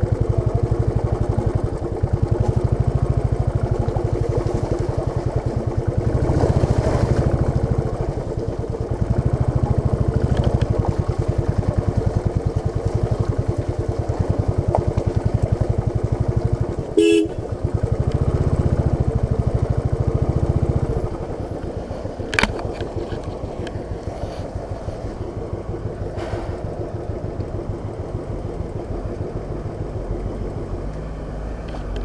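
Royal Enfield Bullet's single-cylinder engine running with a steady, pulsing beat as the motorcycle rides. A short horn toot sounds about halfway through. For the last third the engine goes quieter, at a softer beat.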